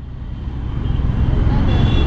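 Motorcycle riding noise in city traffic: a low engine and wind rumble on the rider's camera microphone, growing steadily louder as the bike pulls away.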